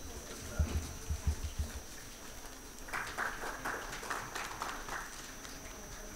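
Quiet room sound: a few low thuds in the first two seconds, then faint, indistinct voices for a couple of seconds, under a thin steady high whine.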